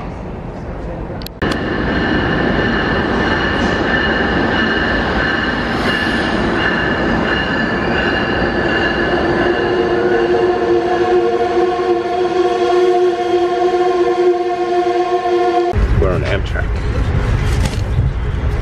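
Passenger train pulling in at an underground station platform: a steady rumble of the moving cars with several steady high tones over it, joined about halfway through by lower steady tones. About two seconds before the end it changes to a heavier, deeper rumble from inside a moving train.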